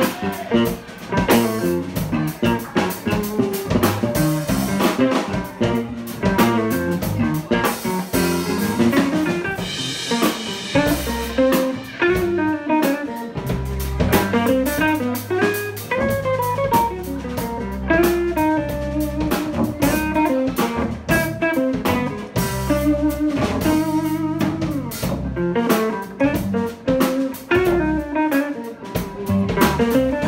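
Live band of electric guitar, electric bass and drum kit playing an instrumental piece.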